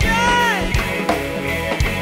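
Live go-go band music: electric guitar, congas and drum kit over a steady beat of low drum hits. In the first half second a pitched note slides up slightly and then falls away.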